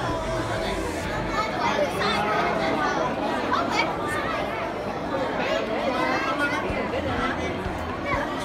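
Indistinct chatter of many people talking at once, with no single voice standing out.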